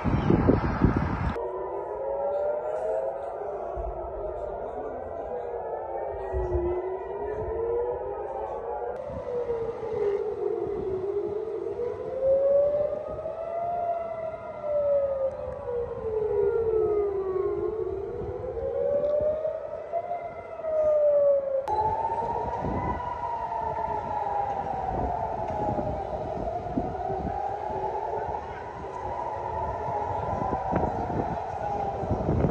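Several air-raid sirens wailing at once, each rising and falling slowly and out of step with the others, warning of an incoming missile attack. The sound changes abruptly a few times as one recording gives way to another.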